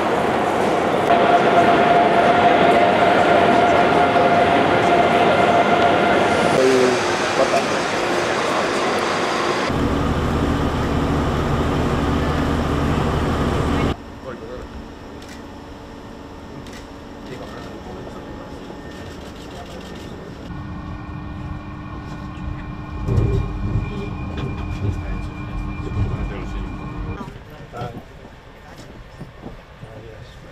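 Train noise: a loud, steady rush with a held whine in the first several seconds, then a heavy low hum. After about 14 s it gives way to quieter ambience with murmuring voices and occasional knocks.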